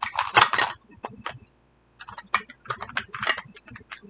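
Plastic packaging of a Mini Brands surprise ball crinkled and unwrapped by hand: a loud crinkle in the first second, then a run of short crackles and clicks.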